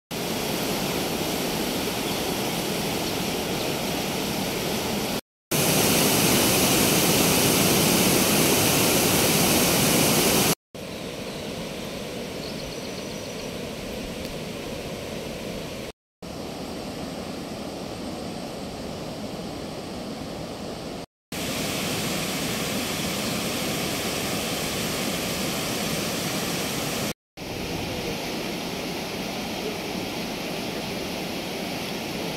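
Steady rushing of water spilling over a weir on a full irrigation canal, heard in several short clips separated by brief silent cuts; the clip from about five to ten seconds in is the loudest.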